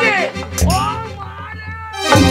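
Stage-show accompaniment music with a steady low beat and sliding, wailing high tones that rise and fall in pitch, the loudest slide dropping steeply at the start.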